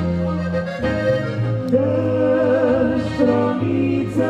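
Slovenian folk band playing lively dance music led by accordion, with a bass line stepping from note to note under a wavering melody.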